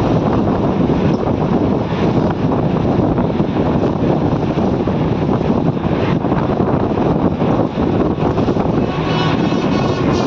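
Steady, loud running noise of a vehicle crossing a bridge, mixed with wind buffeting the microphone; a faint higher whine comes in near the end.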